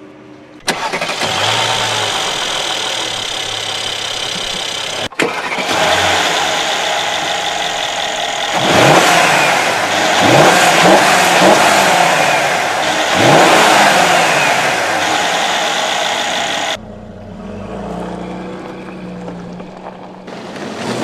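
Mercedes-Benz GLS 500's twin-turbo V8 engine running loud, coming in suddenly under a second in and revving up several times in rising sweeps through the middle, then cutting off suddenly near the end.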